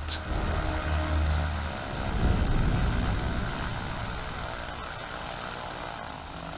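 Pipistrel Panthera light aircraft's engine and propeller running on the ground as it taxis, with a steady low hum that swells about two seconds in and then fades slowly.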